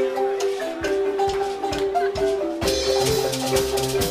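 Zimbabwean-style marimba ensemble playing an interlocking, repeating pattern of mallet-struck notes. About two and a half seconds in, a shaker and low bass marimba notes join in.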